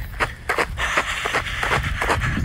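Running footsteps on a trail and the rubbing and jostling of a handheld phone carried by the runner, irregular knocks several times a second, with a rushing noise over the second half.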